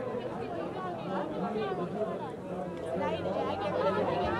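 Indistinct chatter of several people talking at once, with no single voice clear enough to make out words.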